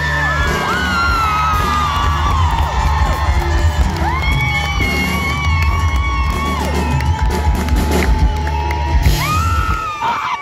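A live folk-rock band plays the closing bars of a song, with a heavy bass that stops just before the end, while the crowd cheers over it.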